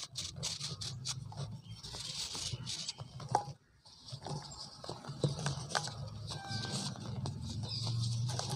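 Dry pure-cement rounds crumbling and snapping in the fingers, with crunchy crackling and loose powder and crumbs pattering down onto more cement powder. The sound breaks off briefly about three and a half seconds in.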